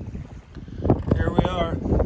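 Wind buffeting the microphone over the low rumble of an open motorboat underway. About a second in, a person's voice cuts in with wavering pitch, too unclear for words.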